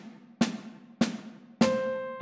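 Snare drum beats at a steady pulse, about one every 0.6 seconds, counting in the bar. On the third beat, near the end, a sustained piano note sounds together with the drum as the example bar begins.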